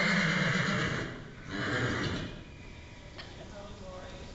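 A horse neighing: a long call falling in pitch that fades about a second in, then a shorter second call.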